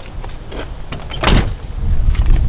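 A van's front door being swung shut: one short, loud burst a little over a second in.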